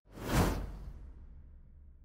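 A whoosh sound effect for a logo reveal, with a deep rumble under it, swelling to a peak about half a second in and then fading slowly away.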